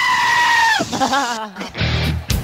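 A high-pitched bleating scream held steady for almost a second, then a shorter wavering bleat. Electric-guitar music comes in near the end.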